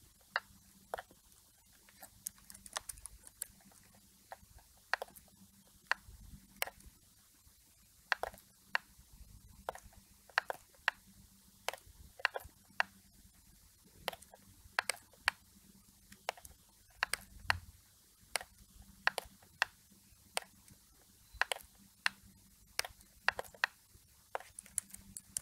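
Computer mouse clicking: short, sharp clicks at irregular intervals, about one or two a second and sometimes in quick pairs, as a brush tool is dabbed along the image.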